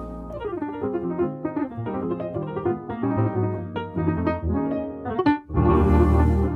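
Jazz piano music: a steady run of notes and chords, dipping briefly about five seconds in before a louder, fuller passage comes in near the end.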